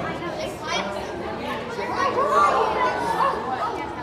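Indistinct chatter of several voices echoing in a large indoor hall, with one voice rising and falling more loudly about two seconds in.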